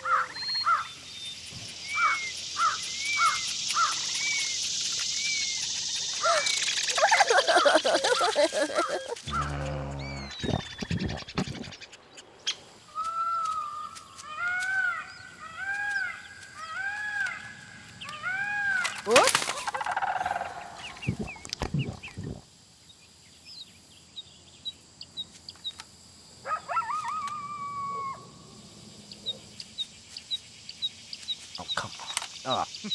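Animated woodland sound effects: a run of bird chirps and calls and other animal cries, including a call repeated about twice a second in the middle, with one sudden loud crack about two-thirds through.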